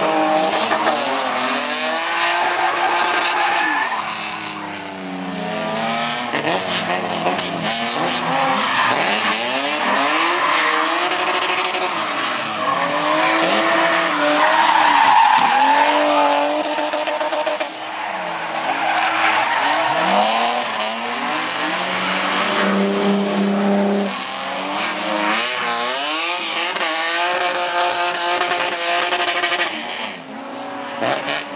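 Drift cars, among them a BMW E30, with engines revving up and down again and again as they slide through the corners, and tyres squealing. For a couple of seconds about three-quarters of the way through, one engine holds steady revs.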